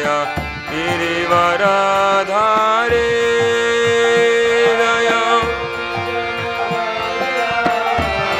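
Devotional kirtan: a male lead voice chanting a sliding melody over a harmonium, with strokes of a mridanga (two-headed drum). The voice holds one long note in the middle, then the singing softens as the drum and harmonium carry on.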